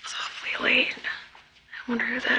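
Only speech: a voice speaking softly, close to a whisper, in two short phrases.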